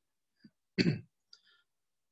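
A man briefly clearing his throat once, in a pause between words.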